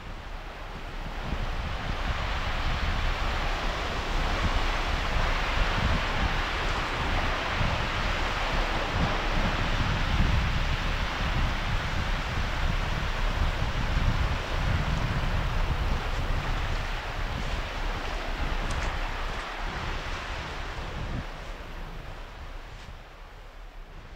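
Steady rush of sea surf and wind, with wind buffeting the microphone as a low rumble. It swells in over the first couple of seconds and fades near the end.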